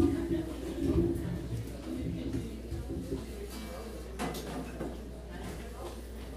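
Indistinct background talk in a bar, with a thud at the very start as a microphone stand is handled and a sharp knock about four seconds in.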